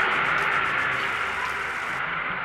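Steady outdoor street background noise, an even hiss with no distinct events, easing off slightly toward the end.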